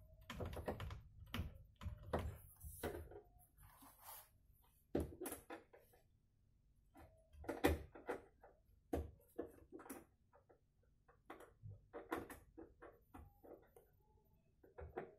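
Irregular, scattered clicks, taps and knocks of hand work on a wardrobe's top-hung sliding-door rail and its hardware, the loudest knock a little past halfway.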